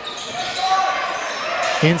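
Live court sound of a basketball game in a gym hall: crowd murmur and a basketball bouncing on the wooden floor, carrying in the large room. The commentator's voice comes back near the end.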